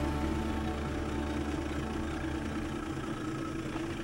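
Small motorboat's engine idling: a steady low rumble with a hum of held tones over it, fading out near the end.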